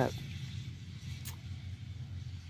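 Low steady hum of a distant engine running, with one short faint tick a little past a second in.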